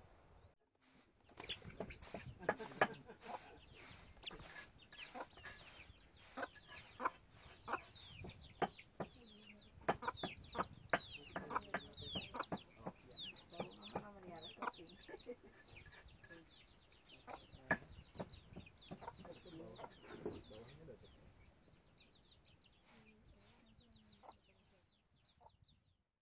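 Chickens clucking and chirping, many short high chirps mixed with sharp clicks; the sound thins out and fades away near the end.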